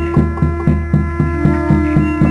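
Dance music: a drum beating steadily, about four strokes a second, over a sustained droning tone.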